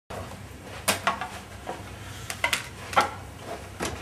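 About seven light clicks and knocks from turntable and mixer gear being handled, spaced irregularly, over a faint steady hum.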